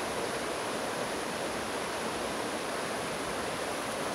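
Steady, even rushing noise of the outdoor background, with no distinct events.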